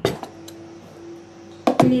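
Tableware on a wooden table: a sharp clink as a small glass bowl with a metal spoon in it is set down, a lighter tap about half a second later, then a louder knocking clatter near the end as a plastic squeeze bottle of sauce is picked up.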